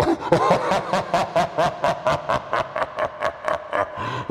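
A person laughing in a rapid, even run of 'ha's, about five a second.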